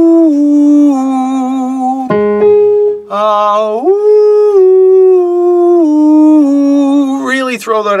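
A man singing a vocal exercise on an open "ooh": he finishes a phrase stepping down note by note, then about three seconds in slides up to a high held note and steps down again in a slow descending scale, over a sustained keyboard note. Near the end he gives a quick rising whoop.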